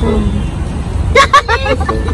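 Steady low rumble of road traffic, with buses passing on a nearby street.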